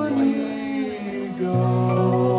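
Live folk band playing a slow passage near a song's end: electric guitar chords held and ringing, with a woman's sung vocal, moving to a new chord about one and a half seconds in.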